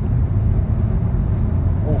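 Steady low rumble of road and wind noise inside the cabin of a Geely Starray SUV cruising at about 140 km/h, with the engine turning about 2,500 rpm.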